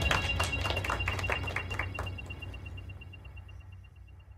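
A small group applauding, separate handclaps that thin out after about two seconds as the sound fades away.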